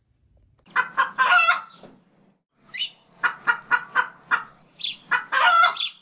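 Chicken calls: a short rooster crow about a second in, a quick run of about five clucks in the middle, then another crow near the end.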